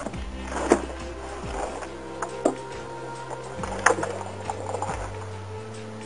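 A few short knocks as a plastic compost barrel tumbler turns on its pole, over background music with sustained chords.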